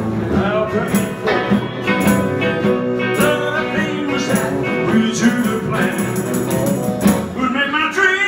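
Live rock-and-roll band playing: electric guitars and drums with a steady beat, and a voice singing toward the end.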